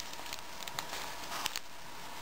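Duct-tape-covered Ziploc bag being handled and opened: faint crinkling and rustling with a few small clicks.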